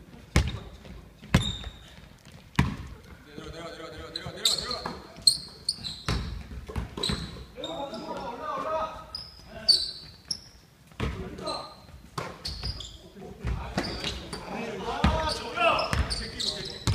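A basketball bouncing on a hardwood gym floor: irregular sharp thuds about a second apart that echo round the hall. Between them come short high squeaks from sneakers on the court and players' voices calling out.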